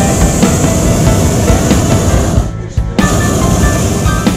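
Music playing; it drops away briefly about two and a half seconds in, then resumes.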